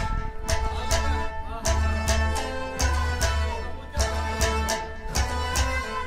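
Kashmiri folk ensemble playing an instrumental passage: a plucked rabab and a harmonium's held notes over regular drum strokes, with deep thuds about every half second.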